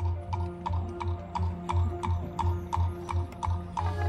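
Marching band music in a quieter passage: a steady pulse of sharp, clicky percussion strokes, about three a second, each with a low bass beat, over held low tones.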